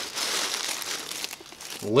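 Tissue paper and packaging crinkling as a bottle is pulled out from the wrapping in a box. The rustle dies down shortly before the end.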